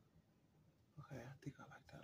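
Near silence, then about a second in a woman starts speaking softly, close to a whisper.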